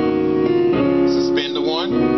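Piano playing the five chord in D-flat, a suspended A-flat chord resolving to an A-flat seven flat nine. A new chord is struck about three-quarters of a second in and held.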